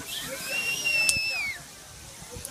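A black kite calling: one high, drawn-out whistle that holds its pitch and then drops away at the end. A sharp click sounds about a second in.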